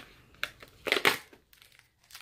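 Packaging crinkling and rustling in two short bursts, a small one under half a second in and a louder one about a second in, as a plastic-wrapped sachet of bath salts is pulled out of a cardboard advent calendar compartment.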